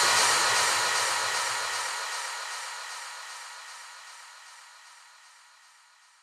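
The closing wash of noise of a house track, left after the last kick drums and fading steadily away over about five seconds, its low end gone first.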